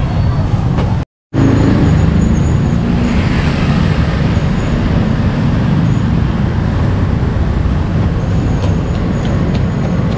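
Street traffic noise with a steady low drone of motorcycle and tricycle engines running nearby. The sound cuts out completely for a moment about a second in.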